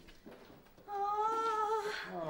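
A woman's voice holding one long note on a steady pitch, starting about a second in after a quiet moment.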